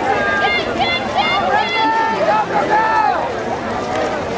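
Poolside spectators yelling and cheering for swimmers, several voices overlapping, some shouts drawn out.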